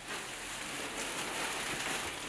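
Steady soft rustling of a pillow being handled, with crackly noise from the plastic apron.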